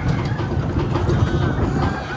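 Mine-train roller coaster running fast on its track, heard from the front car: a loud, steady rumble of the wheels on the rails.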